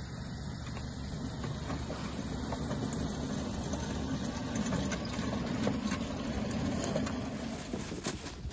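Loaded hand pallet jack rolling across asphalt: a steady low rumble with scattered light clicks.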